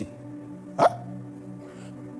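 A soft, sustained background music bed holding steady low notes. About a second in, one brief, sharp vocal sound falls quickly in pitch, hiccup-like.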